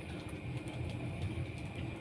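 Etawa goat buck eating wet bran mash (comboran) from a bucket: irregular low slurping and chewing with a few small clicks.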